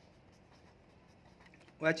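Pen writing on paper on a clipboard: faint, light scratching as numbers are written out.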